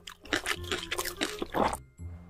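Close-miked wet chewing and squishing of a mouthful of spicy instant noodles, a quick run of small smacks and squelches that cuts off abruptly just before the end.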